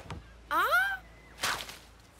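Cartoon sound effects: a short pitched sound that rises and then falls about half a second in, followed by a quick whoosh about a second later.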